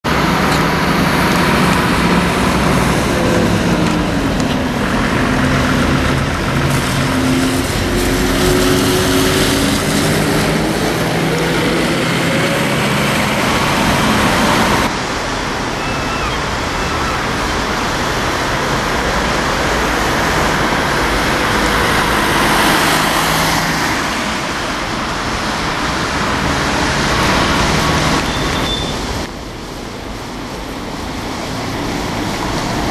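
Street traffic with Renault Agora city buses and cars passing. In the first half a bus engine's pitch rises steadily as it accelerates. The sound changes abruptly about halfway through and settles to a steadier traffic and engine noise.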